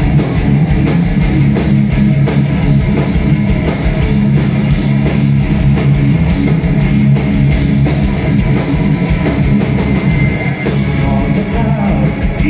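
Heavy rock band playing live, an instrumental passage with distorted electric guitars, bass guitar and a drum kit, heard from the audience floor.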